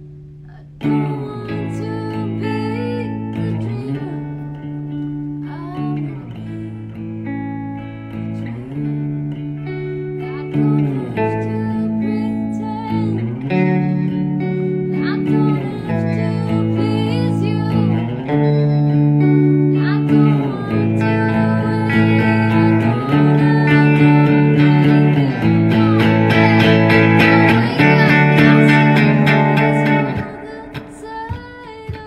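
Two electric guitars strummed through small amps, the chords changing about every two and a half seconds, with a woman singing over them. The playing builds louder toward the end.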